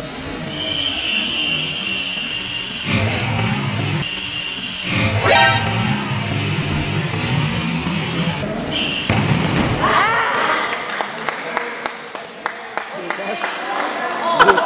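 Indoor volleyball rally in a reverberant gym hall: the ball struck on a serve and a dig, with players' shouts and voices around the court. A high steady tone sounds for about two seconds near the start.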